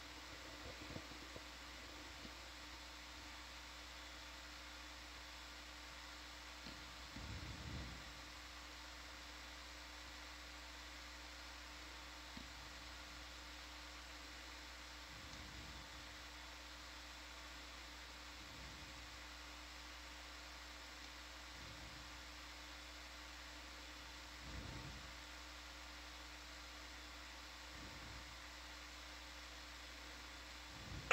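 Faint steady hiss and electrical hum of an open audio line, with a few faint low swells now and then.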